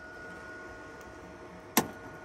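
A steady, faint high-pitched hum, with a single sharp knock about three-quarters of the way through.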